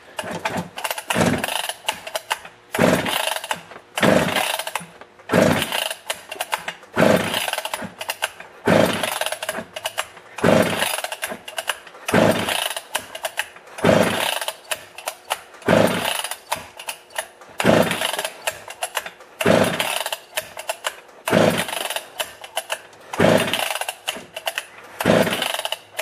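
Husqvarna 154 chainsaw pulled over by its recoil starter about fifteen times, roughly one pull every second and a half to two seconds. The plug is out and a compression gauge is in its place, so the engine cranks without firing during a compression test; the reading comes to 150 psi, very good after the cylinder repair and new piston and ring.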